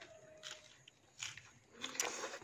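Faint chewing and mouth sounds of a person eating a mouthful of leafy green food, with a few short crackly bursts about half a second, just over a second, and near two seconds in.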